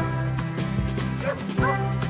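Background music, with a dog giving two short, high-pitched rising cries a little past the middle.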